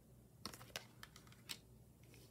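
Faint sharp clicks and taps, four or five spread across two seconds, of tarot and oracle cards being slid and laid down on a wooden table, over a faint low hum.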